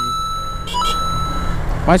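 Motorcycle engine running at low speed, with wind rumble on the helmet-camera microphone, as the bike filters between lanes of traffic. A thin steady whine sits over the rumble.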